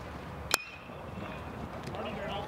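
A college baseball bat striking a pitched ball about half a second in: a single sharp ping with a brief ring, off a ground ball to third base. A low stadium background hum continues around it.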